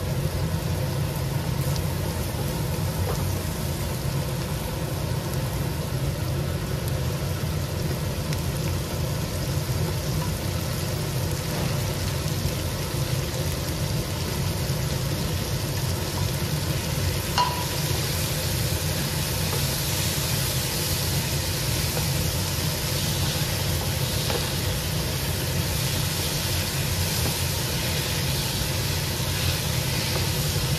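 Shallots and chillies frying in oil in a pan, sizzling steadily as a wooden spatula stirs them, over a steady low hum. About halfway through there is a brief knock as sliced mushrooms are tipped in, and the sizzling turns brighter and hissier after that.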